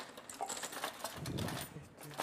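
Light kitchen clatter: scattered clicks and clinks of utensils being handled in a drawer, with a sharper click at the start and faint voices in the background.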